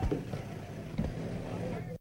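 Street traffic noise: a vehicle engine running steadily, with faint voices and two dull knocks, one at the start and one about a second in.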